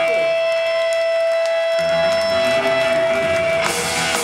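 Punk band playing live through a PA with loud amplified electric guitar. One high note is held and rings on until near the end, while the low end of bass and drums thins out for a second or so and then comes back. A bright wash of noise comes in near the end.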